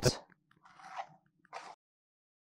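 Two short, faint crunching rustles of a cardboard baking soda box being handled and opened at its torn flap, about a second apart.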